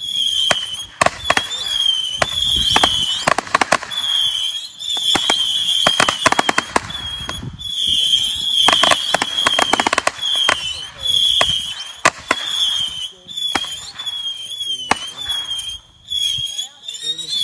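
Cutting Edge Silver Missile Base firework firing its 300 small whistling missiles in quick succession: a near-continuous string of high whistles, each missile ending in a sharp bang, with the bangs coming singly and in fast volleys.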